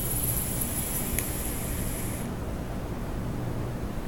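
Electronic cigarette's atomizer coil firing during a long draw, a high hiss of e-liquid vaporizing that cuts off a little past two seconds in, with a faint click about a second in.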